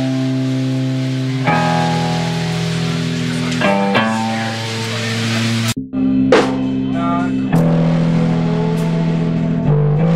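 Electric guitars and bass guitar playing held rock chords that change every second or two. The sound drops out sharply for a moment about six seconds in, then the chords carry on.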